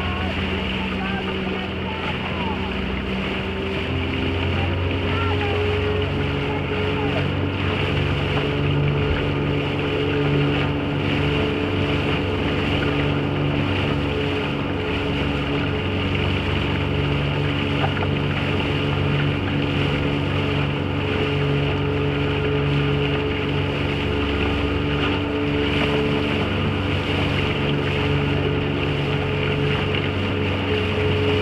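Motorboat engine running steadily under way. About four seconds in, its pitch shifts to a new steady note and holds there.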